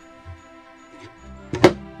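Small wooden mailbox door shut with one sharp wooden clack about one and a half seconds in, over steady background music.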